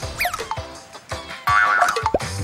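Light background music with a comic cartoon sound effect: a quick sliding glide up and back down in pitch just after the start, then scattered plinks. A steadier run of musical notes comes in near the end.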